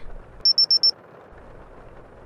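Digital thermometer beeping five times in quick succession, short high-pitched beeps, as it is switched on to take a temperature.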